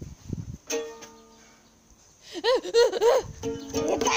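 A plucked-string note, like a ukulele, rings out about a second in. After a short quiet spell comes a quick run of short, high, rising-and-falling cries, then another held plucked tone near the end.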